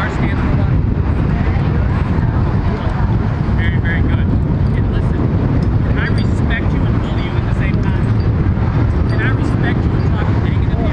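A steady low rumble of wind on the microphone, with indistinct voices from the gathered crowd rising through it a few times.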